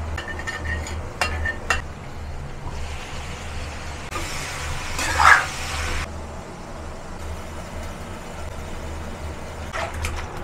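A metal spatula stirs and scrapes duck pieces and ginger slices in a frying pan. There are a few light clinks in the first two seconds and a louder scrape-and-fry stretch about four to six seconds in, over a steady low hum.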